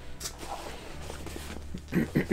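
Handling noise: faint rustling with a couple of short clicks as an object is reached for and picked up, over a low steady hum.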